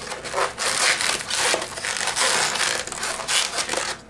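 Inflated latex 260 modelling balloon rubbing and squeaking in the hands in an irregular run as a bubble is twisted and locked into place.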